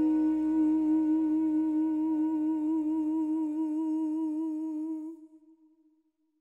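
A male voice holds the song's final sung note, with the vibrato widening as it goes on, over a soft sustained orchestral chord. The orchestra dies away about four and a half seconds in, and the voice fades out just after, ending the song.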